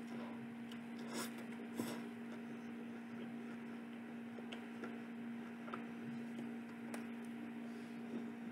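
Biting and chewing a soft-bun chicken burger: faint, scattered mouth clicks and smacks over a steady electrical hum.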